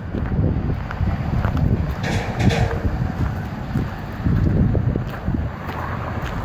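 Wind blowing across the microphone: a low, uneven noise that swells and drops in gusts.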